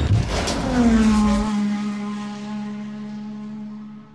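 Logo sting sound effect: a loud rushing whoosh with a deep rumble that cuts off about a second and a half in, while a tone slides down and settles into a held note that slowly fades.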